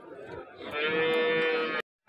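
Cattle mooing: one steady, held moo about a second long that cuts off abruptly.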